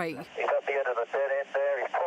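Police radio transmission: a voice speaking over a narrow, tinny radio channel during the pursuit.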